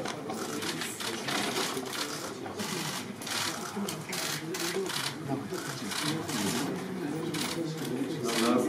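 Camera shutters clicking in quick, irregular runs as press photographers shoot a posed faceoff, over a low murmur of voices.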